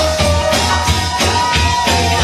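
Live rock band playing loudly: drum kit, electric guitar and bass, with a tambourine shaken along and one long held note over the top.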